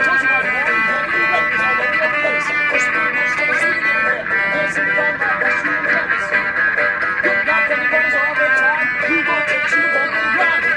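A busking string band playing an instrumental: a banjo picked in quick runs together with a bowed string instrument sliding between notes.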